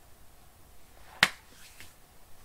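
A single short, sharp click about a second in, with a couple of fainter ticks after it, over quiet room tone.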